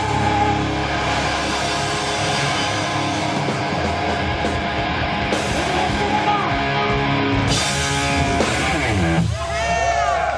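Live heavy metal band playing, with distorted electric guitars and drums, heard loud from the crowd; the song breaks off about nine seconds in.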